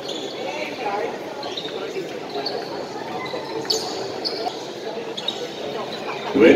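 Gymnasium ambience during a basketball stoppage: steady murmur of crowd and player voices in a large echoing hall. Several short, high squeaks come through, typical of sneakers on the court.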